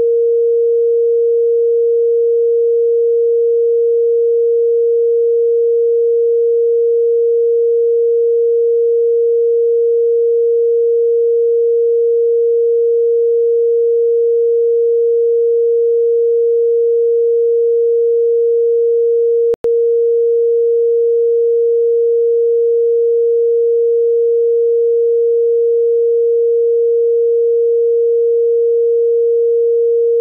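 A loud, continuous, steady beep tone replacing the bodycam's recorded audio, a redaction tone masking the conversation. It is broken once by a split-second gap about two-thirds of the way in.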